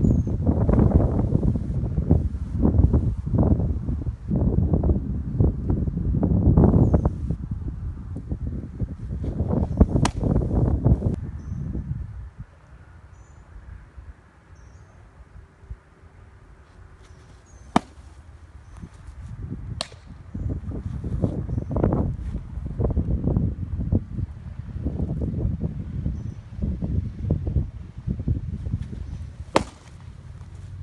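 Baseball pitches popping sharply into a catcher's mitt, a loud single smack about ten seconds in and another near the end, over gusty wind rumbling on the microphone.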